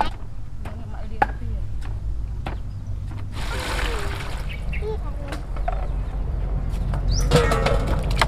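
Water poured from a plastic pitcher into a large plastic basin, a hiss lasting about a second near the middle, with irregular knocks of a wooden pestle in a mortar and brief voices.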